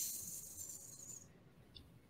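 A faint high hiss that fades away over about the first second.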